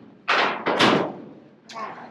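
Several thuds and clanks from a steel cattle chute and its gates as a steer is moved through.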